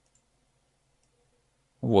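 Two faint computer mouse clicks, then a voice starts speaking near the end.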